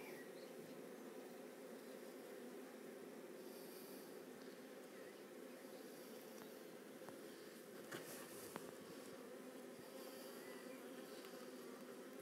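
Faint, steady hum of many honey bees flying around an opened hive, with a couple of light knocks about eight seconds in.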